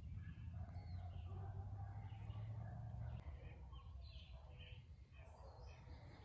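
Faint bird chirps scattered through the woods, short calls repeated every second or so. Under them runs a low rumble that is strongest for the first three seconds, then eases.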